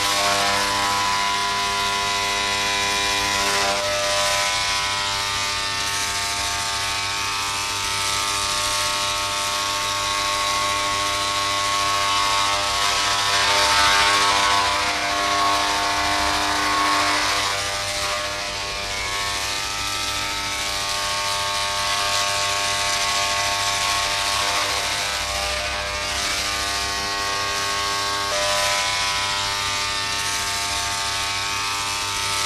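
Electric hair clippers buzzing steadily as they shave a man's head, swelling a little about halfway through.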